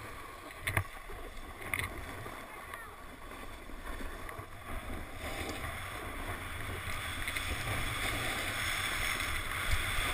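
Snowboard sliding down a groomed snow run, a steady scraping hiss that grows louder toward the end, with wind rumbling on the camera's microphone and two brief knocks near the start.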